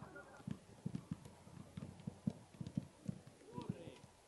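Footballs being touched and kicked on artificial turf by many players at once: soft, dull thuds at irregular spacing, several a second, with a faint voice in the distance.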